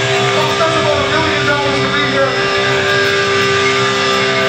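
Electric guitars played live through amplifiers: one steady held note rings under a few shorter picked melodic notes, with no drums.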